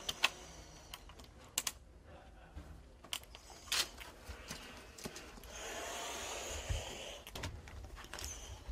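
Pilot's oxygen mask and flight helmet being handled and fitted: a few scattered light clicks of the mask fittings and straps, then a steady hiss lasting about two seconds past the middle.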